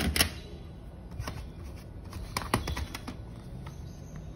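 Plastic CD jewel cases being handled: a handful of sharp, separate clicks and clacks over soft handling rustle.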